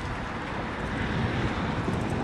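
Wind buffeting the microphone over a steady rush of street traffic noise.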